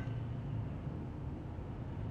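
Steady low hum inside a vehicle's cabin.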